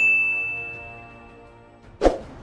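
A single bright, bell-like notification ding that rings and fades away over about a second and a half: the bell sound effect of a YouTube subscribe animation.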